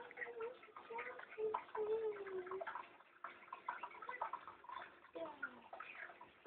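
Faint water trickling in a turtle tank, with scattered light clicks and a few faint, wavering voice-like calls.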